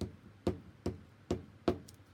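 A glue stick being worked onto paper laid on a table, giving five sharp knocks about half a second apart.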